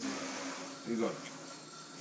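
A man says a couple of words over a steady hiss that sets in suddenly at the start.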